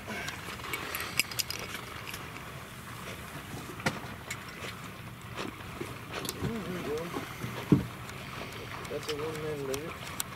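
A dog swimming with a duck in its mouth, the water sloshing and splashing steadily as it paddles. A few sharp clicks cut in, the loudest about three-quarters of the way through.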